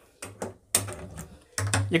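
Handheld spark gas lighter clicking a few times over a gas stove burner until the burner catches alight.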